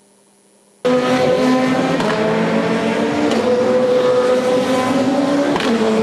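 Touring race car engine running hard at high revs, starting abruptly about a second in, over a hiss of tyre spray on the wet track. Its pitch shifts briefly near the end, like a gear change.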